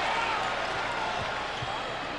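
Steady arena crowd noise on a TV game broadcast, with a couple of basketball bounces on the hardwood court a little past the middle.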